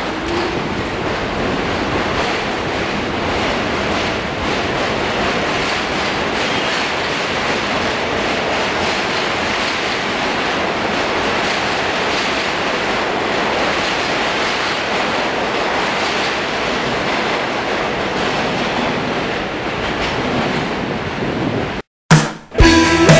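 New York subway train running along an elevated platform track: a steady rumble and rail noise with no distinct beats, cutting off suddenly near the end.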